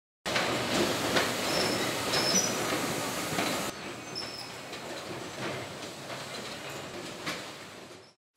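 Bare-root plant processing machinery running: conveyors and a sorting machine making a dense mechanical clatter with a few brief high squeaks. About a third of the way in the sound becomes duller and quieter, then it fades out near the end.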